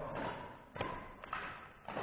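Badminton racket strings striking a shuttlecock: three sharp hits about half a second apart.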